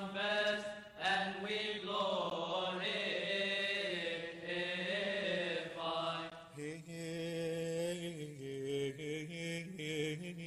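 A man chanting a prayer of the Coptic Orthodox liturgy, holding long notes that step up and down. The melody drops lower about six and a half seconds in.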